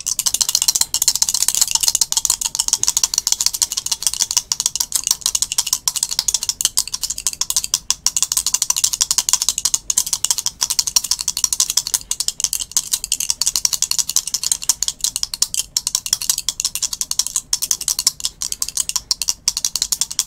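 Two small translucent plastic dice shaken steadily in cupped hands, rattling against each other and the palms in a fast, unbroken clatter of clicks.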